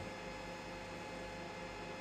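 Faint steady electrical hum over a low, even hiss: room tone.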